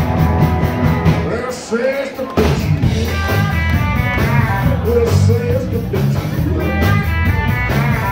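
Live rock and roll band playing loud: Telecaster electric guitar, Fender electric bass and drum kit keeping a steady beat. About two seconds in the sound briefly thins, then the whole band comes back in together.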